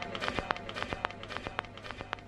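Quiet stretch of a pirate FM reggae broadcast between the DJ's toasting lines: a steady low hum under irregular sharp clicks and crackles.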